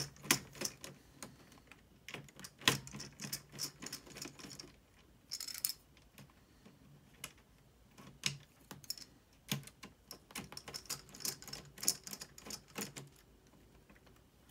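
Small screwdriver working the display-bracket screws at a laptop's hinge: irregular small clicks and taps of the tool and fingers on the plastic and metal chassis, with a brief scrape about five seconds in.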